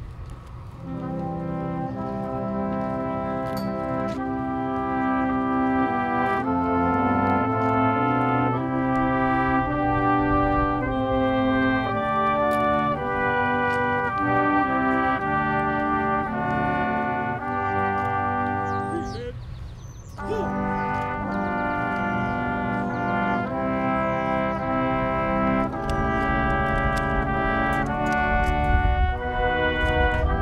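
A brass band of trumpets and trombones playing a slow piece in held chords that change every second or two, with one short break about twenty seconds in.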